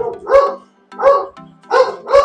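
A dog barking three times, evenly spaced about two-thirds of a second apart.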